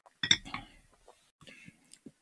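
A drinking glass set down on a desk, clinking about a quarter of a second in, followed by fainter small handling knocks.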